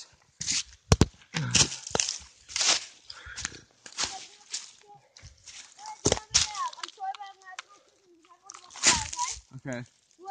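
Irregular rustling and crunching from a climber moving on a steep, leaf-covered slope, with phone handling noise and a sharp click about a second in. A faint voice comes in past the middle.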